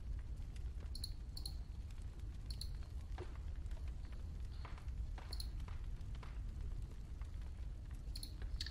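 Quiet room tone: a steady low hum with a few faint, short clicks scattered through it.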